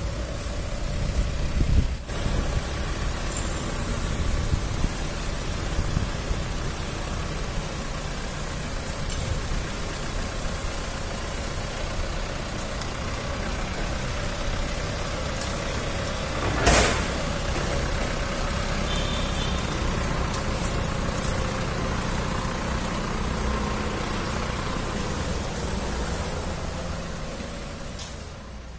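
An ambulance van's engine running steadily at idle, a low rumble throughout. A single brief, loud knock comes a little past halfway.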